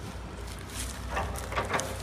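Leaves and branches of a persimmon tree rustling in a few short, sharp crackles as someone moves among them picking fruit, over a steady low rumble.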